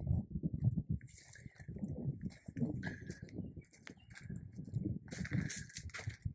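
Footsteps crunching on gravel at an irregular walking pace.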